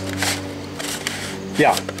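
A plastic packaging tray scraping and rustling as it slides out of a cardboard box, with a Vise-Grip chain clamp inside. A steady low hum runs underneath.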